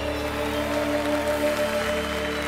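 A live band holding the closing chord of a pop-rock song, with studio-audience applause starting up under it.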